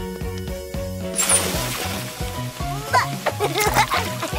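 Bouncy cartoon background music with a repeating bass line. About a second in, a water splash sound effect starts and carries on, and short high voice sounds come in near the end.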